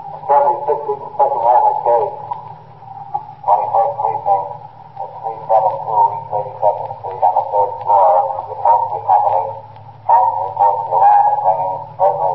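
A man's voice over a police car radio, thin and tinny as through a small speaker, speaking in three stretches with short pauses, over a steady low hum.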